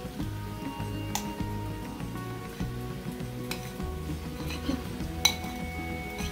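Background music with a stepping bass line, over a metal spoon clinking against a ceramic bowl and a stainless frying pan as cooked rice is scraped into the pan, three sharp clinks with the loudest near the end. Light sizzling from the pan of cauliflower rice.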